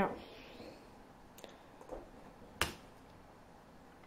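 Computer mouse and keyboard clicks: two faint ticks, then one sharp click about two and a half seconds in.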